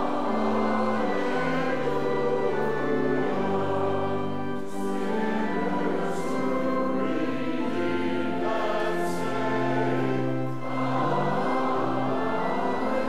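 A hymn sung by choir and congregation over organ accompaniment, with held bass notes under the singing and short breaks between phrases.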